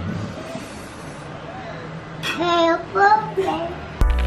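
A high-pitched voice gives three short, held, sing-song sounds about two seconds in, over a faint steady hum.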